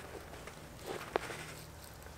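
Faint rustling of a gloved hand working potting soil around a marigold's root ball in a plastic five-gallon bucket, with a small sharp click a little after a second in.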